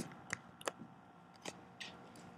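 Dry-erase marker writing on a whiteboard: about five short squeaky strokes and taps spread over two seconds.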